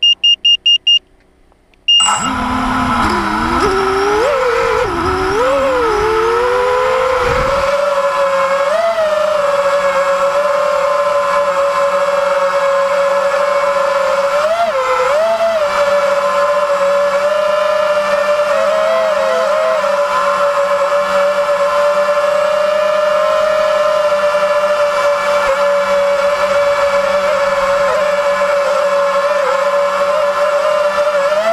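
Five-inch quadcopter's four RCX 2205 2250KV brushless motors with triblade props: a few short electronic beeps, then about two seconds in the motors spin up and it lifts off, the whine rising in pitch with a low rumble for the first few seconds. It then settles into a steady high-pitched whine while hovering, wavering slightly in pitch now and then.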